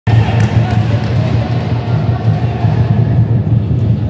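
Music and voices in a large sports hall, with a few sharp knocks of a futsal ball on the wooden floor in the first half.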